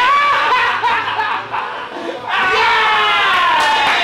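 Men laughing and shouting in excited reaction, ending in a long drawn-out cry whose pitch slowly falls.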